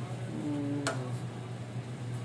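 A spatula clicks once against a nonstick frying pan while cheelas cook, over a steady low hum.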